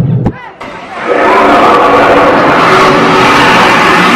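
The animatronic Gringotts dragon roaring over a crowd, a loud, sustained roar that sets in about a second in after a brief lull.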